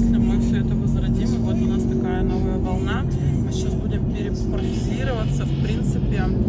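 Steady low road and engine rumble inside the cabin of a moving BMW, heard from the back seat under voices.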